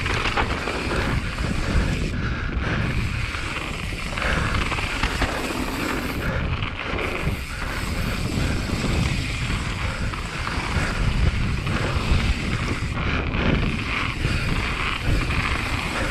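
Wind rushing over an action camera's microphone, over the rumble and rattle of a mountain bike rolling fast on a gravel and dirt trail. Steady in level, with constant small knocks from the rough surface.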